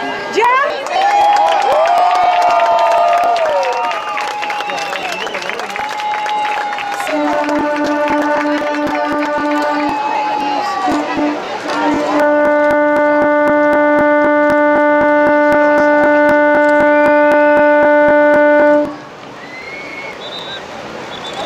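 A horn sounds a steady note, broken at first and then held for several seconds before cutting off sharply near the end, over a crowd shouting and cheering.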